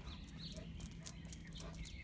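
Light, irregular clicking footsteps on paving as a dog and the person walking with it move along, over a faint steady hum.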